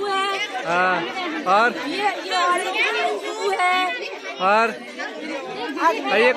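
Several people talking at once, overlapping chatter of voices close to the microphone.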